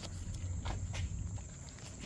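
Crickets chirping steadily in a thin high tone, with a few light clicks.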